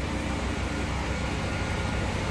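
Steady city street noise: a low traffic rumble under an even hiss.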